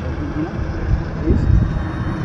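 Steady low rumble of a running engine, with a man's voice breaking in with brief, halting sounds over it.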